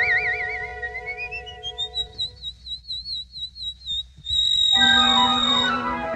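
A cartoon bird's whistled song: a warbling trill, then a run of short notes climbing steadily higher, a fast warble at the top, and a long shrill held high note. Soft orchestral accompaniment runs underneath and swells back in under the held note.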